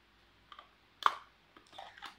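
Plastic clicks from handling a small battery-powered mini washing machine: two small clicks about half a second in, then one sharp, loud click about a second in, with softer handling noise near the end.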